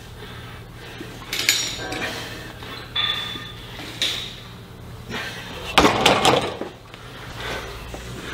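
Metal clinks and clanks from a plate-loaded iso-lateral row machine with bumper plates, as rows are pulled: several separate knocks, then a louder clatter about six seconds in.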